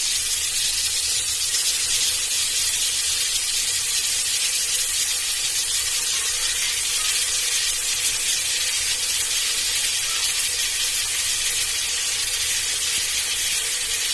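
Onions and freshly added chopped tomatoes sizzling in ghee in the base of a pressure cooker: an even, steady hiss with a faint low rumble underneath.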